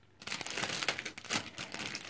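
Packaging crinkling and rustling as shop items are handled, a dense run of small crackles starting a moment in.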